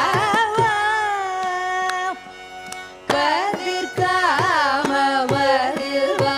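A woman singing a Carnatic vocal phrase with rapid oscillating ornaments (gamakas) on the notes. A long held note ends about two seconds in, and after a short break the ornamented singing resumes. Sharp percussive strokes mark the beat throughout.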